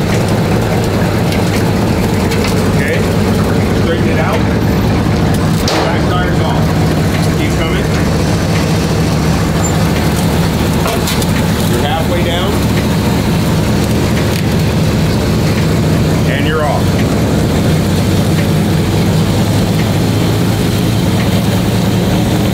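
1963 Chevrolet Impala's engine idling steadily as the car creeps slowly forward.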